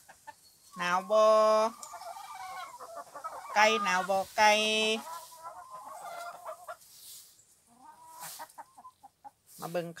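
A flock of hens clucking softly on and off, with short wavering calls, between a woman's spoken words.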